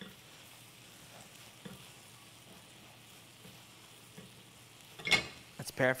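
Faint, steady sizzle of portobello mushrooms cooking in a frying pan, with soft scraping as a wooden spoon mixes a moist crab-and-breadcrumb filling in a pot. A short, sharper sound comes about five seconds in.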